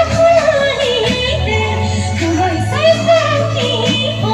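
A woman singing a sustained, wavering melody into a microphone, backed by a live band with electric bass guitar holding a steady low note.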